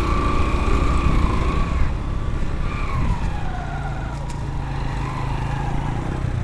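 Motorcycle engine revving hard under load as it pushes through a deep stream crossing, its pitch held high for about three seconds and then falling away to steadier, lower running.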